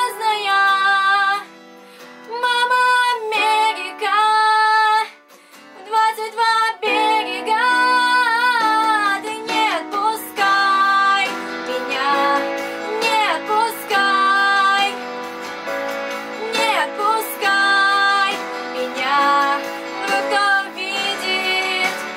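A teenage girl singing a Russian pop ballad, accompanying herself on a Yamaha MODX keyboard. Her sung phrases come with short breaks over the first several seconds, then run on more fully over sustained chords.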